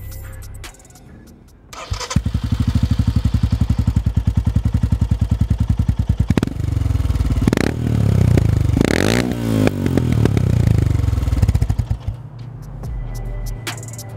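Royal Enfield Himalayan's single-cylinder engine starting about two seconds in and idling with an even, rapid pulse. It is then blipped once and revved up and down several times before settling back to idle near the end.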